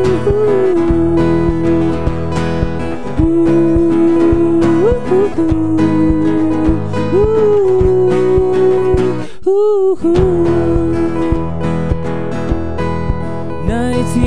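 Strummed acoustic guitar under a man's voice singing long, held notes that bend slightly in pitch. The guitar drops out briefly about two-thirds through, then comes back.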